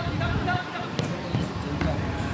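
Voices calling out across an outdoor football pitch, with two sharp thuds of a football being struck, one about halfway through and one near the end.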